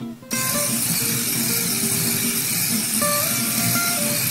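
The Dogcow robot's drive motors start running just after the right-turn command is sent from the iPad. They run steadily for about four seconds over background guitar music.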